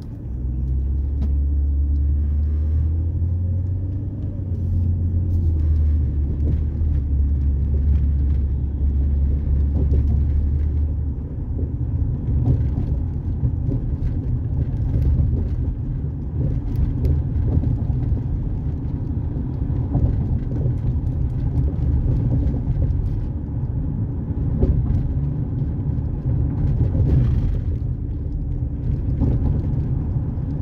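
A moving car's engine and road rumble heard from inside the cabin, low-pitched and steady, with a heavier deep drone for roughly the first ten seconds.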